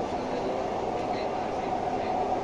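Dubai Metro train running on its elevated track, heard from inside the carriage: a steady rumble with a faint even hum.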